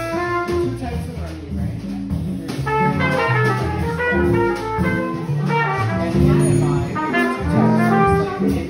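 Live small jazz band playing, with a trumpet line over bass notes and drums, heard in a room full of chatter.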